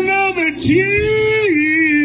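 A male blues singer's voice, live: a short sung note, then a long note held for about a second that drops to a lower pitch and is held again, over a sparse band backing.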